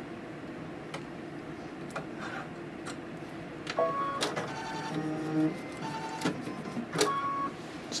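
Brother embroidery machine stitching a tack-down seam around the patchwork pieces, a steady mechanical running sound. In the second half, several short pitched motor whines come and go as the embroidery arm moves the hoop.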